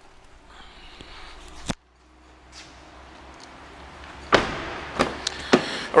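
BMW X6 doors being worked: a sharp door click about two seconds in, then the loudest sound, a clunk and rustle as the rear door is opened, with two more knocks near the end.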